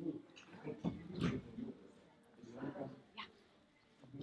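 Faint voices of people talking in a room, with a couple of short higher-pitched sounds.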